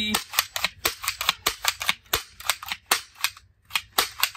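Toy gun firing a rapid series of sharp cracks, about five a second, with a short pause near the end.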